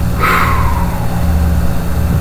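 Steady low mechanical or electrical hum, with a brief breathy sound falling in pitch about a quarter second in.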